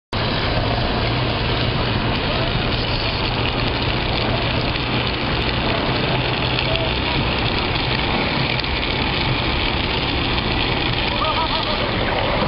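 Steady rushing noise of wind on the microphone and wheels rolling on asphalt, from a camera travelling fast downhill with riders on drift trikes.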